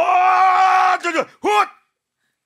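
A man's loud, drawn-out shout of effort, a strained battle cry of someone straining to heave himself upright with a person on his back. It is held at one steady pitch for over a second, then comes a short second cry, and it stops suddenly.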